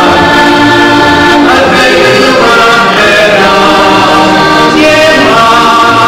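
A heligonka (diatonic button accordion) playing a lively folk tune in sustained chords, with a man singing along.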